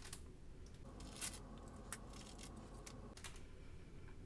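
Faint handling sounds: a few light clicks and taps as small scissors and the pressed earring blanks are handled on a padded work surface.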